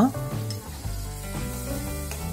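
Fish roe frying in a pan of onion-tomato masala, sizzling steadily as a slotted metal spatula stirs it.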